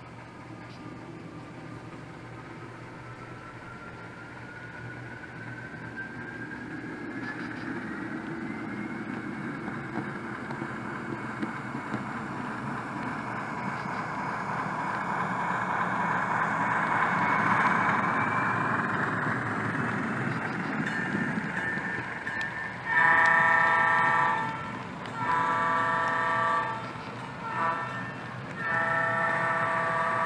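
HO scale model diesel locomotive and freight cars rolling along the track, growing louder as they approach, with a whine rising in pitch over the first few seconds. About 23 s in, the locomotive's onboard sound horn blows the grade-crossing signal: two long blasts, a short one, and a long one.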